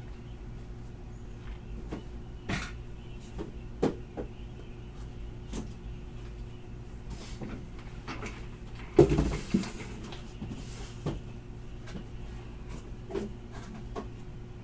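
Scattered knocks, clicks and clatter of things being handled and set down, with the loudest knock and a short rustle about nine seconds in, over a steady electrical hum.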